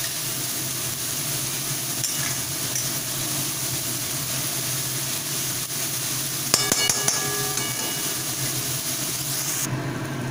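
Sliced onions and chillies sizzling in hot oil in a kadai while a metal spatula stirs and scrapes them. About six and a half seconds in, the spatula gives a metallic clink with a short ring.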